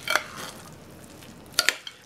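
A metal spoon in a casserole dish: a short scrape through the cooked rice mixture at the start, then two sharp clinks against the dish about a second and a half in.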